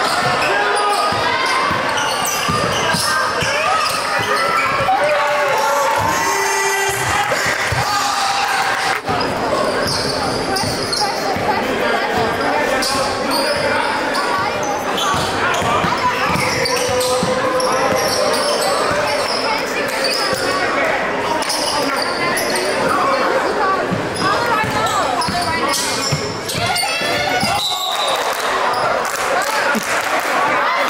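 Basketball dribbled on a hardwood gym floor during live play, with indistinct voices of players and spectators throughout, echoing in a large gym.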